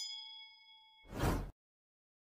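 Subscribe-animation sound effect: a bell-like notification ding as the bell icon is clicked, ringing and fading over about a second, followed about a second in by a louder, short whooshing burst of noise.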